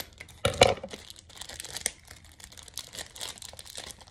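Foil wrapper of a Pokémon card booster pack crinkling as it is cut open with scissors and handled, with a louder crackle about half a second in and a run of small crackles after.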